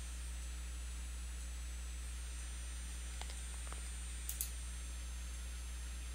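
Steady low electrical hum of the recording setup, with a few faint clicks in the middle, the clearest a quick pair about four seconds in: a computer mouse being clicked.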